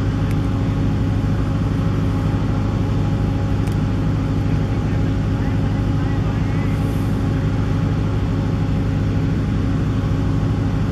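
A steady engine-like drone holding one fixed pitch, unchanging in level throughout.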